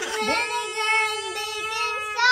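A child singing one long, drawn-out note, its pitch holding nearly steady with a slight waver.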